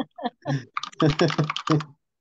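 Laughter: a few short voiced bursts, then a quick run of laughs in the second half.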